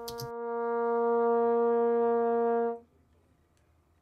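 A brass instrument, played with an upstream embouchure, holds a single low note that swells louder after about half a second and cuts off cleanly a little under three seconds in.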